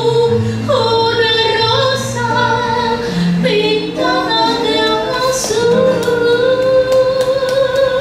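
A woman sings with acoustic guitar accompaniment, holding long sustained notes that step between pitches, the last one held until the end.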